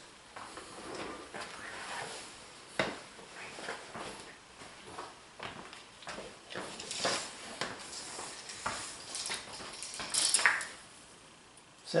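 Footsteps and scattered light knocks and clinks of objects being handled while a tape measure is fetched, busier in the second half.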